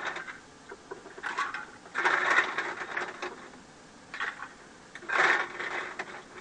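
Ice cubes clattering and rattling, with louder bursts about two and five seconds in amid scattered clicks and knocks, as ice is scooped from a full ice bin.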